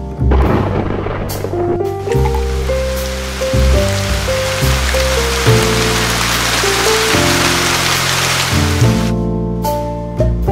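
A steady hiss of falling rain laid over background music with a slow melody and bass line; the rain fades out about nine seconds in, leaving the music alone.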